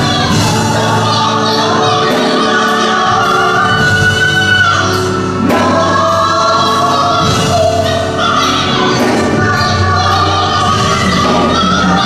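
Gospel song sung live: a woman's lead voice with long held notes, joined by backing singers.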